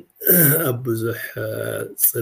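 A man talking: only speech.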